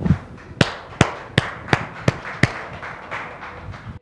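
A quick run of sharp knocks, about six strong strikes roughly two or three a second, with fainter knocks between and after them.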